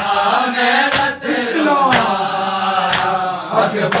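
A group of men chanting a noha (Shia mourning lament) together, their voices gliding in pitch, kept in time by sharp chest-beating strikes of matam about once a second.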